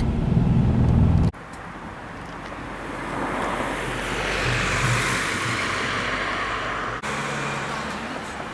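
Car engine and road drone heard from inside the cabin, cut off suddenly after about a second. Then a car passes on the road outside, its tyre noise swelling to a peak about five seconds in and fading away.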